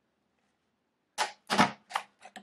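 A small handheld stapler driving a staple through a few folded sheets of paper: a quick run of sharp clacks a little over a second in.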